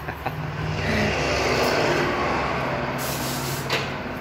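A long hiss of escaping air that swells about a second in and dies away near the end, with a short click just before it stops, over a steady low machine hum.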